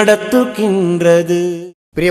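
A solo voice singing long, held, gliding notes in a devotional-style intro jingle. The singing cuts off suddenly near the end.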